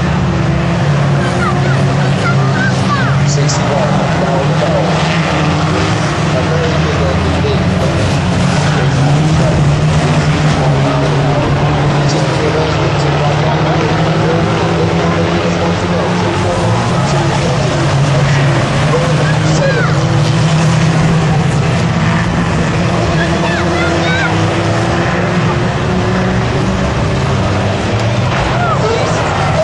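Engines of several vans racing on an oval track, running loud and steady throughout with pitch rising and falling as they rev through the laps.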